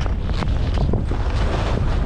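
Wind buffeting the microphone of a skier's camera at speed, a steady rumble, with the skis hissing and scraping through loose snow in short surges.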